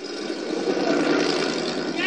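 A truck driving, its engine and road noise a steady rush that swells over the first half second.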